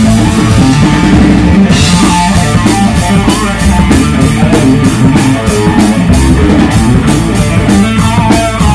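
A rock band playing live: electric guitar, bass guitar and drum kit together. A cymbal wash fills the first second or so, then the drums settle into a steady beat.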